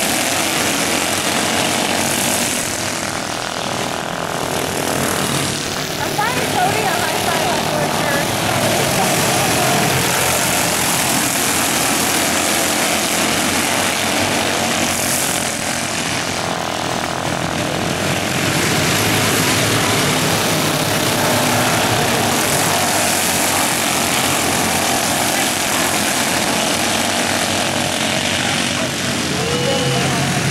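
Engines of several minidwarf race cars running on a dirt oval, a continuous mixed drone of small engines. Rising and falling engine notes stand out as cars pass, about six to eight seconds in and again near the end.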